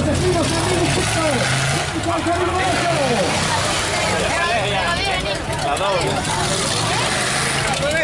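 Off-road 4x4 engines running hard through mud, with many voices shouting and yelling over them.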